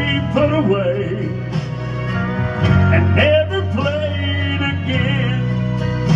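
Country music: steady bass notes under a wavering melody line.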